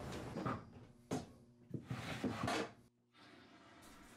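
A few short knocks and rustles of a blue plastic bucket and its pump hoses being handled, spread over about two seconds.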